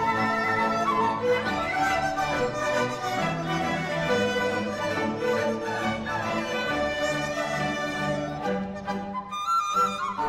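A Chinese orchestra with bowed strings plays a slow, lyrical passage alongside a dizi (Chinese bamboo flute) soloist. Near the end the accompaniment thins, and a single flute-like melody steps up in pitch on its own.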